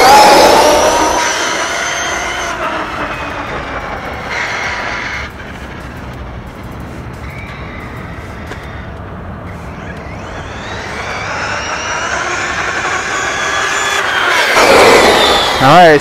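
Brushless electric motor and drivetrain of a Losi LST 3XL-E 1/8-scale RC monster truck whining on a flat-out speed run of nearly 50 mph. The whine is loudest at the start and falls in pitch as the truck speeds away, fades into the distance, then grows louder and rises again as it comes back near the end.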